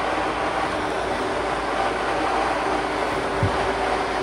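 Electric blower fan of an inflatable tube man running, a steady rush of air with a faint hum in it. A short low thump sounds about three and a half seconds in.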